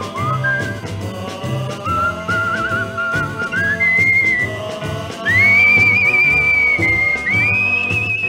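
Closing instrumental passage of a 1957 Sun Records rockabilly ballad: a high, wavering lead melody that steps up higher about five seconds in, over a steady bass and drum beat.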